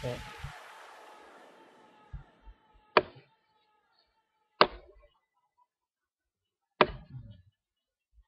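A computer mouse clicking sharply three times, about a second and a half to two seconds apart. A fading hiss dies away in the first two seconds.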